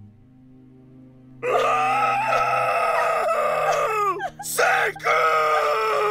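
A man wailing in anguish: two long, loud, drawn-out cries, each sliding down in pitch as it trails off, over soft sustained music.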